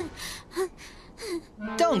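A young girl's short, breathy gasps, three or four catches of breath, sounding like quiet sobbing.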